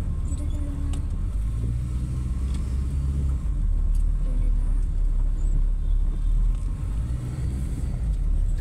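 Steady low rumble of a car's engine and tyres heard from inside the cabin while driving, a little louder from about three and a half seconds in.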